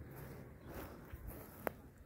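Quiet footsteps on dry, mown grass, with a single sharp click near the end.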